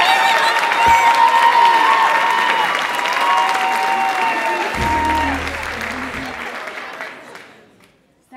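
Audience applauding and cheering, with long high whoops over the clapping. The noise dies away over the last few seconds.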